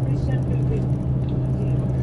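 Tour bus engine and road noise, a steady low drone heard inside the moving cabin, with faint voices in the background.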